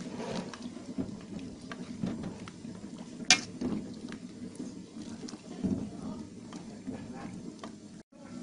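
Metal spoon stirring rambutan pieces and spices in boiling water in an aluminium pot, with bubbling and scraping, and one sharp click about three seconds in.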